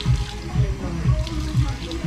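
Water from a handheld shower sprayer running onto short hair as the head is rinsed. Background music with a steady beat of about two thumps a second plays over it.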